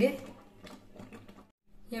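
A woman's voice trailing off, then about a second of faint light clicks and a brief moment of dead silence before her voice starts again near the end.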